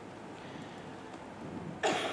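A pause in a woman's talk: faint room tone, then near the end a short, sharp throat noise as she starts speaking again.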